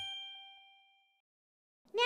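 A single bright, bell-like ding sound effect that rings out and fades away over about a second.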